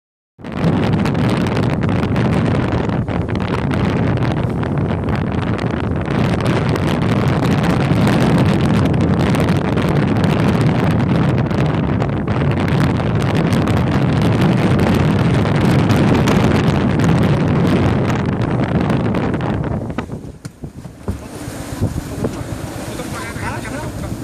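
Strong wind buffeting the microphone aboard a sailboat under way in choppy water, mixed with water noise; loud and steady, then easing sharply about twenty seconds in, with voices near the end.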